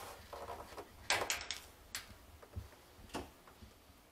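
Faint rustling with a few short clicks and soft knocks, the handling noise of a handheld camera being moved around.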